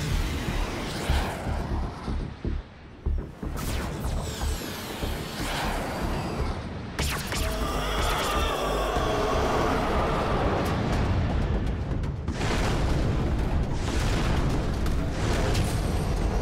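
Cartoon battle soundtrack: dramatic score with heavy booming hits, and a drawn-out animal-like roar from about eight to twelve seconds in.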